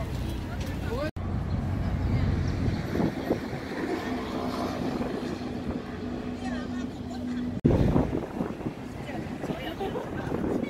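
Outdoor city ambience: indistinct chatter of passers-by over a steady rumble of traffic, with a steady hum for a few seconds in the middle. The sound cuts off abruptly twice, about a second in and near the end, as one clip gives way to the next.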